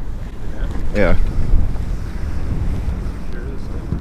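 Wind buffeting a phone's microphone over choppy river water: a loud, uneven low rumble that swells about a second in.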